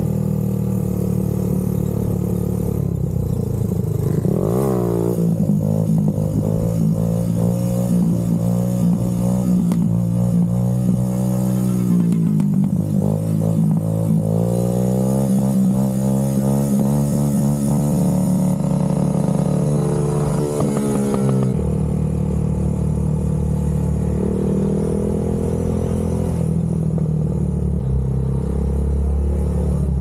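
A sport quad's engine revving up and down, holding steady between revs, with background music mixed over it.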